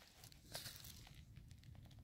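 Near silence, with a few faint, soft rustles and ticks.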